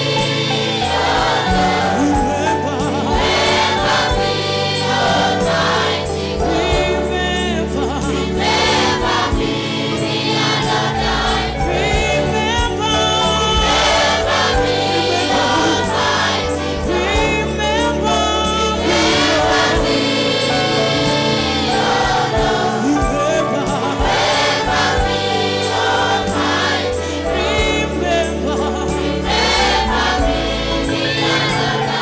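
Gospel choir singing with instrumental backing and a bass line that steps between low notes.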